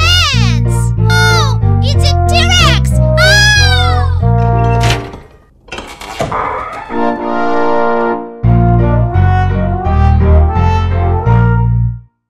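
Bouncy children's cartoon music with a stepping bass line, overlaid for the first four seconds or so by high-pitched, sliding cartoon-character vocal sounds. The music drops away briefly about five seconds in, comes back, and cuts off suddenly at the end.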